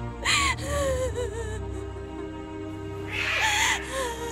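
A woman sobbing over sustained background music: a gasping cry about half a second in and a second, longer wailing sob about three seconds in.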